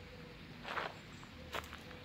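Footsteps of someone walking on a park path: a scuffing step a little under a second in and a sharper step about a second and a half in, over faint outdoor background.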